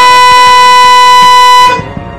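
A loud, steady electronic bleep tone that holds one unchanging pitch and cuts off abruptly near the end. It is typical of a censor bleep laid over dialogue.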